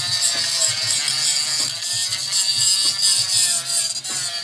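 Hand-held grinder running steadily while grinding on a mini bike's small engine, a continuous high-pitched grinding.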